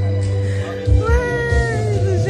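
Loud party music with a heavy bass line; about halfway through, a long high voice-like note cuts in over it, sliding slightly down.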